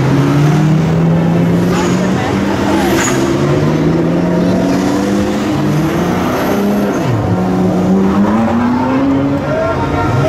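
Sports car engines revving and accelerating as one car after another pulls away, the engine note climbing several times with a brief drop about seven seconds in.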